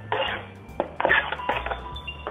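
Chopped celery tipped from a plastic cutting board into a plastic salad bowl, a few short clatters and rustles, over background music.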